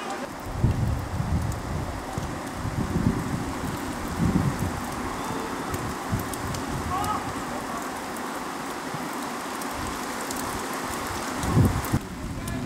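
Wind buffeting the microphone in irregular low gusts over a steady outdoor hiss, with faint distant shouts from players about seven seconds in.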